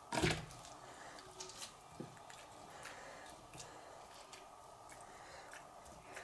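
Faint handling sounds of hands pressing fresh cow's-milk cheese curd down in a plastic cheese mould on a plate. There is a brief knock just after the start, then soft scattered clicks.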